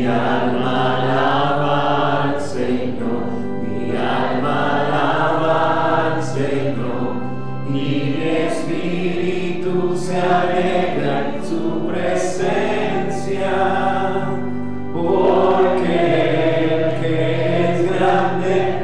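Voices singing a slow religious hymn together, with long held notes over a steady low accompaniment.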